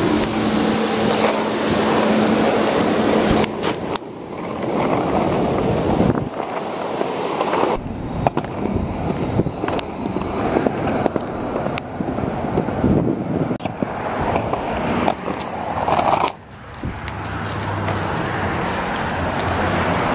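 Small cruiser skateboard's wheels rolling on a concrete sidewalk: a steady rumble, with occasional clicks as the wheels cross the sidewalk joints.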